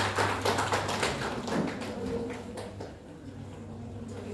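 Scattered hand-clapping from a small audience, a few claps a second, thinning out and dying away about two seconds in.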